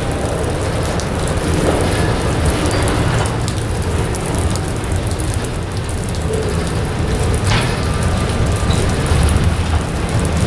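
Freight train's boxcars rolling past close by: a steady rumble and rattle of steel wheels on rail.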